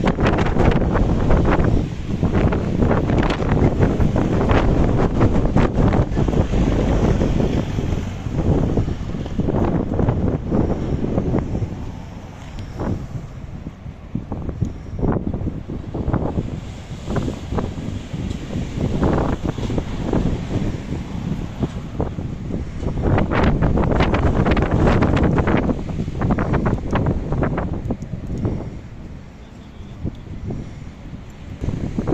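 Strong lodos wind gusting over the microphone, a loud buffeting rumble. It eases off about halfway through and gusts hard again a few seconds before the end.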